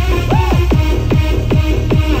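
Loud electronic dance music from a DJ set over the stage PA: a rapid, pounding kick-drum beat, with a synth swoop rising and falling about half a second in.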